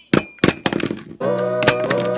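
A plastic toy shark knocked against a wooden tabletop in a quick run of hard knocks. Slide-guitar music comes in a little past halfway.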